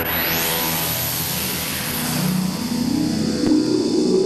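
Electronic music: a hissing sweep rises at the start, then a low drone glides slowly upward, like an engine revving.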